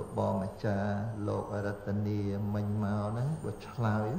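A man chanting Buddhist-style recitation in long, level-pitched phrases with short breaks between them.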